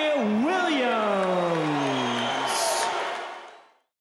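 Boxing ring announcer's drawn-out call of the winner's surname: one long held vowel that lifts briefly, then slides down in pitch over about two seconds, with crowd noise behind. The sound fades out near the end.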